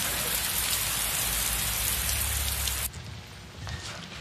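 Heavy rain falling, a dense steady hiss with a low rumble underneath, that cuts off suddenly about three seconds in, leaving quieter room tone.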